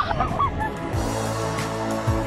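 A woman's high squealing shriek under the waterfall, breaking off in the first half second; about a second in, background music with a steady beat starts.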